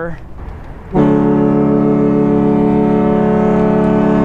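Horn of the Southern Belle riverboat blowing one long, steady blast of several tones at once, starting about a second in; it is taken as the signal that the boat is leaving.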